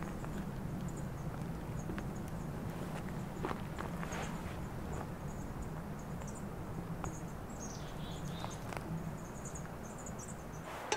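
Outdoor ambience: a steady low rumble of wind, with scattered faint, short high chirps and a few soft rustles and clicks.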